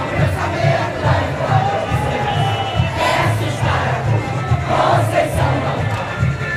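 Samba school street rehearsal: a large crowd singing a samba-enredo together over the drum section's steady low surdo beat.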